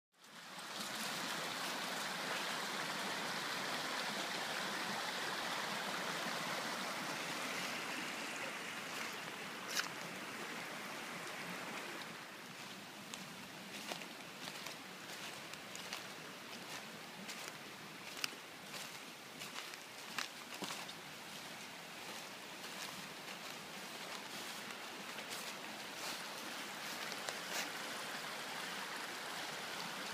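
Rain-swollen stream rushing steadily, a continuous wash of water noise that is louder for the first twelve seconds or so. Scattered sharp clicks sound over it.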